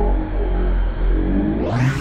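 Slowed-down, pitched-down sound of RC buggies racing on an indoor track: a deep rumble with wavering low motor tones. About one and a half seconds in, the pitch sweeps upward as playback ramps back to normal speed.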